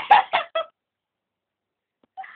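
A girl's high-pitched giggling in a quick string of short bursts, cutting off abruptly about half a second in.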